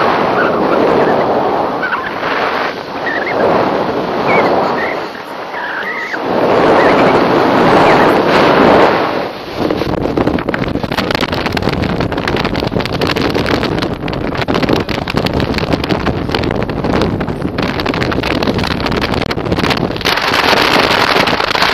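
Wind rushing over the microphone of a selfie-stick camera in paraglider flight, rising and falling in gusts. About ten seconds in it turns into a rapid, rough fluttering buffet.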